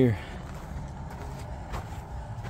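Steady low rumble of distant road traffic, after the last word of a man's sentence at the very start.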